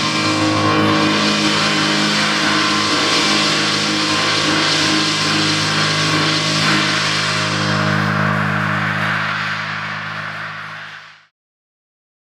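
Live percussion-and-keyboard music: a held low keyboard chord under a dense cymbal wash, fading out and stopping about eleven seconds in.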